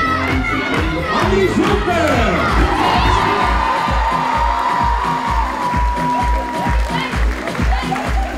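Dance music with a steady kick drum at about two beats a second, under a large outdoor crowd cheering and whooping. A long held high note runs through the middle.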